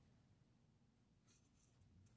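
Near silence: room tone, with a faint rustle near the end.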